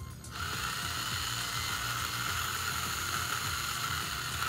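Ryobi cordless drill running steadily with a 5/64-inch bit, drilling out the hole in a plastic servo arm. It starts just after the beginning.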